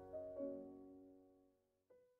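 Soft solo piano music ending: a last couple of notes at the start, then the sound fades away to near silence, with one faint short note near the end.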